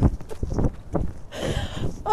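Irregular dull thumps and rustling picked up by a body-worn clip-on microphone as a person whirls about on grass and drops down onto it.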